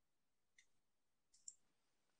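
Near silence with a few faint clicks: one about half a second in, then two close together around a second and a half in.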